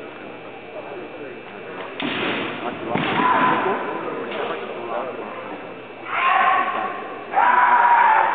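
Kendo fighters' kiai shouts, three long held cries with the last and loudest near the end, with sudden smacks of bamboo shinai on armour.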